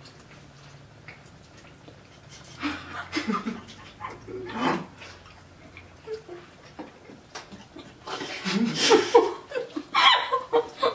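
Muffled hums, grunts and stifled laughs from people with fruit snack strips in their mouths, working the candy in without hands. The sounds come in short bursts about three and five seconds in, and grow loudest near the end.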